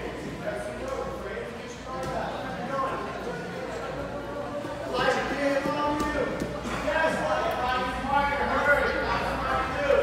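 Indistinct chatter of several voices, children's among them, overlapping in a large gym hall. It grows busier about halfway through, with a few light knocks.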